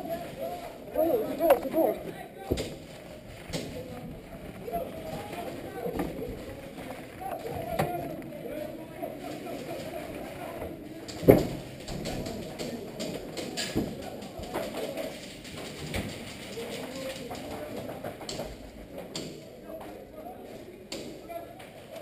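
Indistinct, muffled voices with footsteps and scattered knocks and thumps of players moving through a building.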